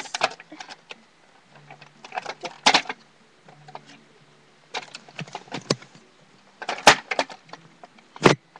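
Scattered clicks and knocks of small plastic toys and toy-house pieces being handled and set down, with a cluster about two and a half seconds in and the loudest knocks near the end.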